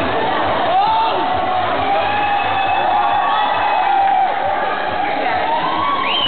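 Crowd of spectators cheering and shouting, with one long drawn-out yell held for several seconds, rising near the end.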